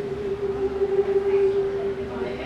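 Live voice-and-acoustic-guitar music: one long held note, steady and then fading near the end, between the last sung line and the next guitar strum.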